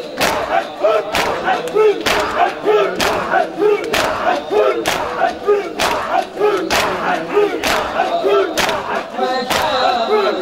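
Crowd of mourners doing matam, hands slapping their chests together about once a second, each strike loud and sharp. Under the strikes, a mass of men's voices chants a noha in unison.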